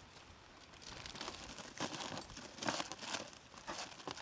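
Plastic bags crinkling as they are handled, in irregular rustles that begin about a second in.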